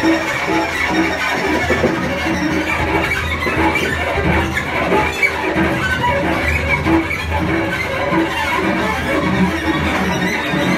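Experimental free improvisation on violin, cello and percussion: a dense, continuous texture of many overlapping tones over a steady low drone.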